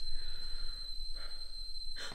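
Stovetop kettle whistling: one steady high tone, with a faint breathy sound about a second in.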